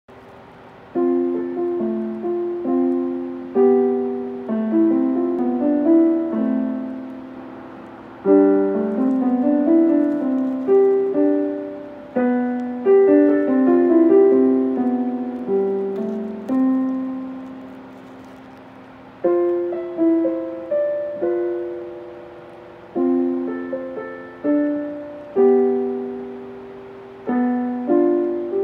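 A piano playing a slow piece in chords and melody, starting about a second in, each note struck and left to die away.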